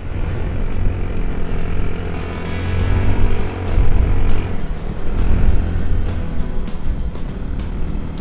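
Off-road side-by-side (UTV) running along a dirt trail, a steady low rumble that swells about three to four seconds in, under background music.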